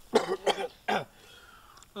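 A man coughing and clearing his throat, a few rough coughs in the first second.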